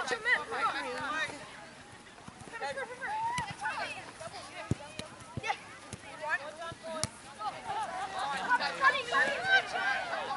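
Players and spectators shouting over one another on the field, with a few sharp knocks of the football being kicked, the loudest about seven seconds in.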